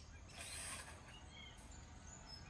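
Faint swish and scrape of a broom brushing at a roof's gutter, one short burst about half a second in.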